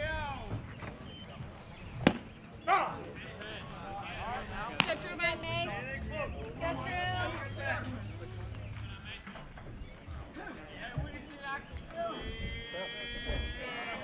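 Voices of players and spectators calling out at a baseball field, with two sharp knocks about two and five seconds in. Near the end one voice holds a long, steady call.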